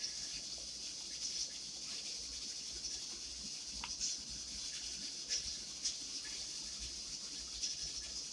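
Faint, scattered wet ticks of fingers pulling the skin off pieces of cooked bone-in chicken, over a steady hiss.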